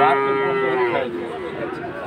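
A cow mooing: one long moo at a steady, slightly falling pitch that fades out about a second in, followed by faint background noise.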